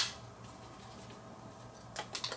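Plastic clicks from a small handheld breathalyzer being handled as AAA batteries are fitted: one sharp click at the very start, then quiet room tone, and a faint click near the end.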